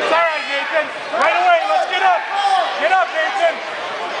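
Raised voices shouting unclear words over the hubbub of a crowded gymnasium, echoing in the hall.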